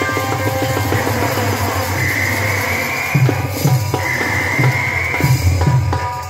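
Live folk-drama music: fast drumming with deep strokes that drop in pitch. A high, held melody note rising slightly comes in twice in the second half.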